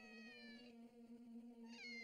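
Faint cat-like meowing: two high cries, each falling in pitch, one at the start and one near the end, over a steady low hum.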